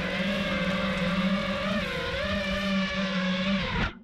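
5-inch FPV quadcopter's brushless motors and propellers whining, the pitch wavering up and down with the throttle, then cutting off suddenly near the end as the quad lands and the motors stop.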